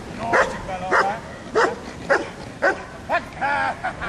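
Young German Shepherd barking at a decoy during bitework, about six sharp barks roughly half a second apart.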